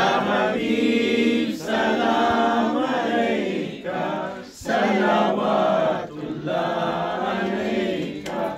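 Men's voices chanting an Urdu devotional salaam to the Prophet without instruments, in long drawn-out melodic phrases with short breaks for breath.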